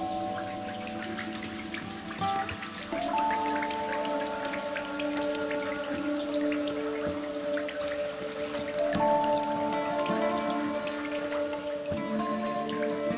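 Thin streams of water running from chrome washing taps, spattering with many small drips as hands rinse the face and nose. Under it, soft music of long held notes whose chord shifts about three seconds in and again near nine seconds.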